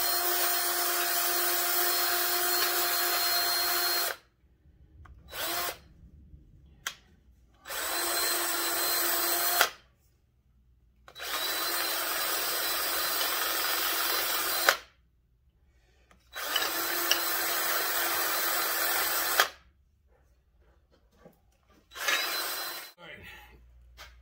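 Cordless DeWalt drill spinning a battery-terminal cleaning brush inside the bushing bores of an ATV A-arm, scouring out the old bushing remains. It runs in bursts: a long run of about four seconds, a couple of quick blips, three runs of two to four seconds and a short last one near the end. Each run spins up to a steady whine and stops sharply.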